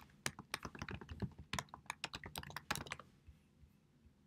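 Typing on a computer keyboard: a quick run of about fifteen keystrokes that stops about three seconds in.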